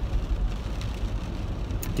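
Steady low road and tyre rumble inside the cabin of a moving electric car.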